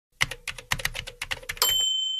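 Typewriter sound effect: a quick, uneven run of about a dozen key clacks, ending near the end in a single bright carriage-return bell ding that rings on and slowly fades.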